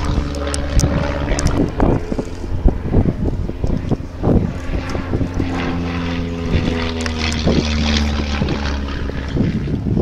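A de Havilland Chipmunk vintage trainer flying overhead, its single propeller engine droning steadily.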